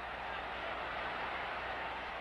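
Steady crowd noise from a hockey arena crowd, an even din with no single voice or impact standing out.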